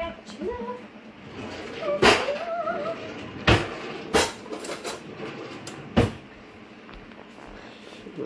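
A few sharp knocks and clicks of a metal mixing bowl and utensil being handled while cake batter is poured into a baking dish, with short murmured vocal sounds.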